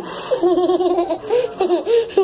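A young girl laughing: a quick run of short, evenly spaced ha-ha pulses, then more laughing.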